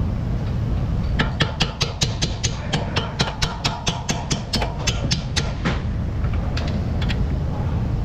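Hand ratchet clicking as a bolt on a Chevrolet Equinox's front suspension is turned out, a run of evenly spaced clicks about four or five a second from about a second in until nearly six seconds, then a few single clicks.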